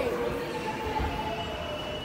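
Tokyu 9000-series Ōimachi Line train slowing to a stop at the platform, a thin steady squeal from its brakes and wheels over a low rumble.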